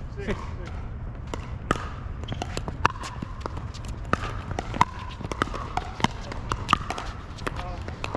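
Pickleball rally: paddles hitting a plastic pickleball back and forth, a series of sharp pops about half a second to a second apart.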